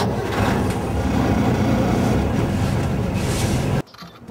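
A vehicle driving, heard from on board: steady, loud engine and road noise that cuts off suddenly near the end.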